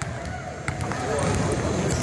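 Basketball being dribbled on a hardwood gym floor, a few sharp bounces over the general noise of a gym.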